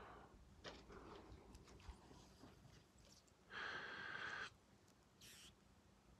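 Near silence with a few faint ticks. About halfway through, a soft breathy blow lasts about a second, followed by a shorter, fainter hiss.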